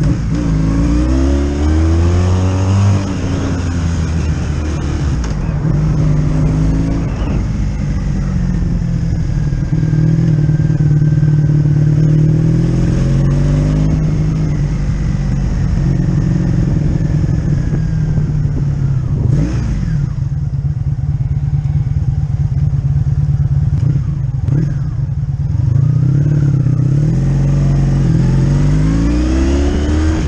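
1985 Honda V65 Sabre's 1100cc V4 engine under way. The engine note climbs as the bike accelerates, drops about three seconds in, then holds steady on a cruise and climbs again near the end, with two short knocks past the middle.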